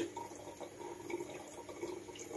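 Faint, steady trickle of running water from a working home distillation still.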